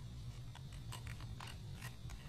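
Faint small clicks and crackles of a screwdriver tip working under the label on a laptop hard drive's metal cover, a few ticks about half a second apart over a low steady hum.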